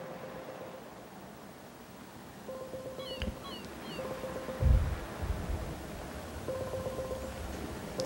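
Telephone ringback tone heard over the phone line: a steady mid-pitched tone sounding in short spells, four times, while the call goes unanswered. A dull thump sounds about halfway through, just after a few faint high chirps.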